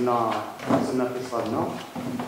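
Only speech: a man talking in Arabic into a microphone.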